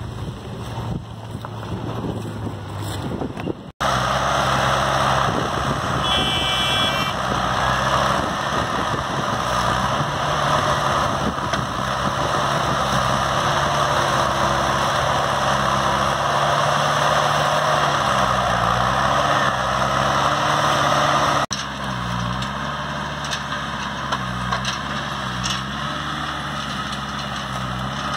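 Engine of a tractor-based sugarcane grab loader running as it loads cut cane, its pitch rising and falling as it works. It is heard under a loud, steady rushing noise. The sound jumps louder about four seconds in and drops back a little near the end.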